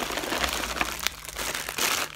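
Plastic packaging crinkling and rustling as it is handled, with a brief lull just past the middle and louder crinkling near the end.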